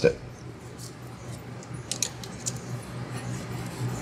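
Light metallic clicks and scraping of a steel feeler gauge slid between a rocker arm and valve stem on a Briggs & Stratton 17.5 hp OHV engine, checking the valve lash, with a few small ticks about two seconds in over a low steady hum.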